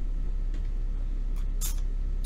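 Steady low drone of a motor trawler yacht's twin inboard engines running under way. Near the end come a couple of brief high hisses or clicks.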